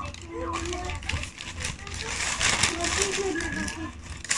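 Soft voices in the room, quieter than close speech, with rustling and small handling noises in between.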